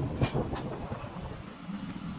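Steady low background hum and rumble, with a couple of short knocks in the first half-second.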